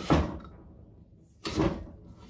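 Kitchen knife slicing through an apple and striking a wooden cutting board. Two cuts, about a second and a half apart, each a sharp knock that fades quickly.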